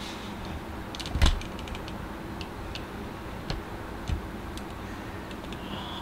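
Scattered light clicks and knocks of objects being handled, with one louder thump about a second in, over a steady low background hum.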